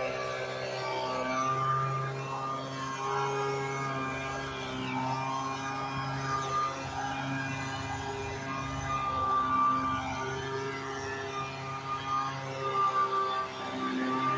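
Handheld leaf blower running steadily, a continuous droning hum blowing dust off the road.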